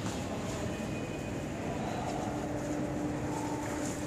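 KT250X lighter packing machine running, a steady mechanical hum with a faint steady tone that comes in about halfway through.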